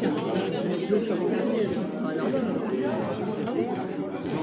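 Many people talking at once in a large hall: a steady babble of overlapping conversations with no single voice standing out.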